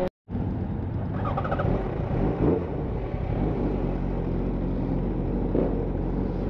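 Yamaha FZ1's inline-four engine running steadily at low revs under a steady rush of wind and road noise. The sound cuts out for a split second right at the start.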